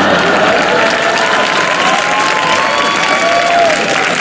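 Audience applauding and cheering, a steady spread of clapping with some voices calling out through it.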